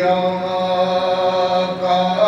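A man's unaccompanied voice chanting a naat, holding one long note that shifts pitch near the end.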